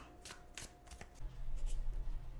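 Tarot cards being shuffled by hand: light scattered card clicks and rustles, with a low steady hum coming in about a second in.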